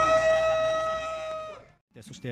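A horn blowing one steady, held note with a slight upward bend at the start. The note lasts about a second and a half and then cuts off.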